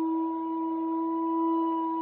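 Music: one steady, sustained drone note with a couple of higher overtones, holding at an even pitch.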